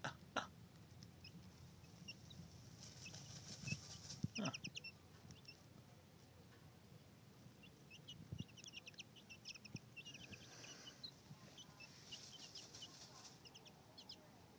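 Chicks about two weeks old peeping faintly: several quick runs of short, high cheeps, with soft rustles of loose dirt as one of them dust-bathes.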